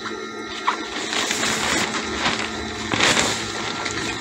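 Cloth rustling and shuffling as skirt fabric is handled and arranged at the sewing machine, with a louder swish about three seconds in, over a faint steady hum.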